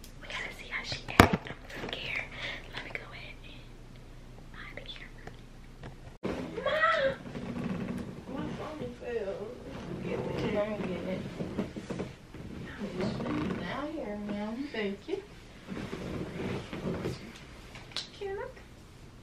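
Soft, low speech and whispering between women. One sharp click just over a second in is the loudest sound.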